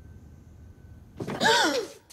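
A woman's short, sharp gasping cry that rises and then falls in pitch, coming suddenly about a second in after faint low rumble.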